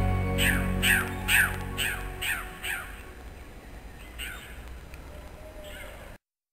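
A series of short, downward-sliding animal calls, about two a second, that thin out after about three seconds to two more. Background music fades out beneath them in the first second.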